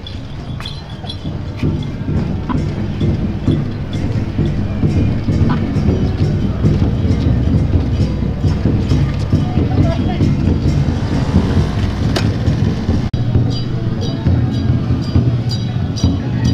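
Continuous low rumbling and rattling of a carved wooden temple palanquin on a wheeled cart as its bearers shove and jolt it back and forth by the poles, with sharp knocks and clicks scattered through it.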